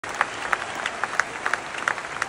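Theatre audience applauding, a steady patter of clapping with a few sharp, loud claps close by standing out.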